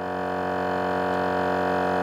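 GSPSCN 12-volt tire inflator's compressor running steadily while filling a flat tire, a steady humming drone with many overtones.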